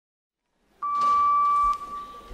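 A single steady electronic beep, held just under a second, then a short echo as it dies away.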